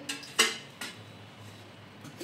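Metal kitchenware clattering at the stove: one sharp clack about half a second in, then a lighter knock shortly after.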